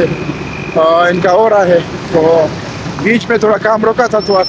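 A man talking over a steady low rumble of engines and traffic.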